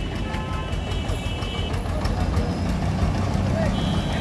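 Steady low engine rumble of vehicles, with faint voices in the background.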